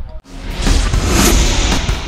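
Sports broadcast transition sting: music with a whoosh and a deep bass hit. It starts suddenly about a quarter second in and swells to its loudest near the middle.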